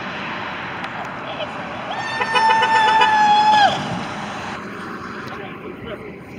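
Street noise with voices. About two seconds in, a horn sounds one long steady note for about a second and a half, sagging in pitch as it stops.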